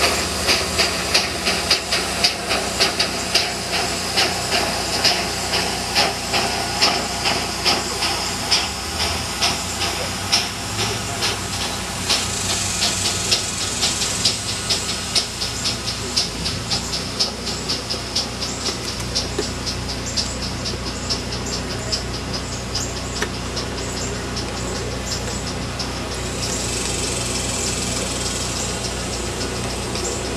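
Aster Great Northern S-2 live-steam model locomotive chuffing, its exhaust beats coming about two a second at first, then quickening and fading as it runs off. A steady hiss of steam rises near the end.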